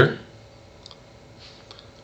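A man's voice ends a sentence, then a pause of low room tone with a few faint, short clicks.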